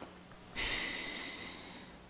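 A person's noisy breath, a hiss that starts suddenly about half a second in and fades away over about a second and a half.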